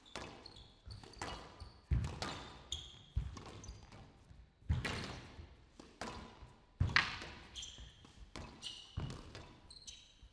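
A squash rally: the hard rubber ball struck by rackets and smacking off the walls in sharp cracks about once a second, with short high squeaks of court shoes on the wooden floor between shots.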